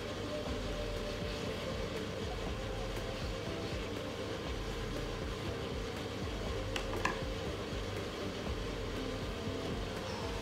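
Steady rumble of water simmering in a covered electric hotpot, with a single light tap about seven seconds in.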